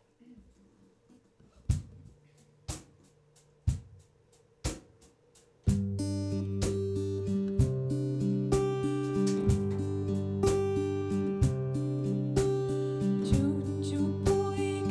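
Acoustic guitar: four sharp taps about a second apart count in, then strummed chords start suddenly about six seconds in and go on at a steady beat.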